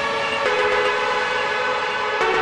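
Trance track in a breakdown: held synthesizer chords with no kick drum, shifting to a new chord about half a second in.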